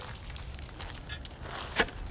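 A transplanting spade chopping into a daylily root clump, heard as one sharp crunch near the end over a low steady rumble.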